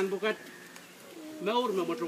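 A person's voice in drawn-out syllables: one phrase ends just after the start, and another comes about one and a half seconds in, rising and then falling in pitch.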